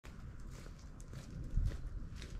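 Footsteps of rubber boots on a dirt and gravel path, several steps with a low rumble underneath, the heaviest step near the end.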